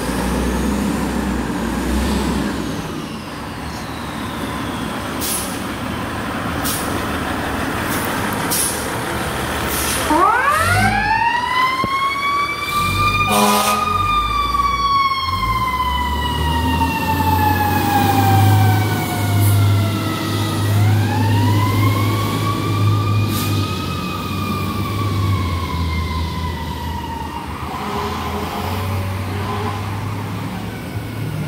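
Fire truck siren winding up to a high wail about ten seconds in, then sliding slowly down. It winds up again about ten seconds later and falls away again. Under it the truck's diesel engine rumbles steadily, and a short horn blast cuts in near the top of the first wail.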